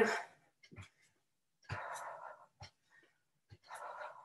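A woman breathing hard in short exhales during quick cross-body knee drives in a straight-arm plank, with a few soft thuds of her feet landing on the exercise mat.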